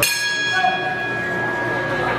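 Boxing ring bell struck once and ringing out, fading slowly over about two seconds: the signal for the end of a round.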